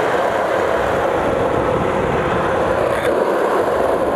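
Skateboard wheels rolling steadily over an asphalt path, an even rolling noise with no breaks.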